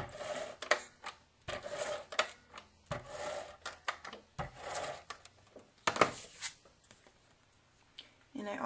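Scotch ATG adhesive tape gun drawn across cardstock in several strokes, about one every second and a half, each a short dry whirr as the tape runs out, with a click at each stroke's end.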